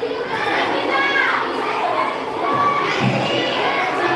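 A crowd of children talking and calling out at once, many high voices overlapping without a break.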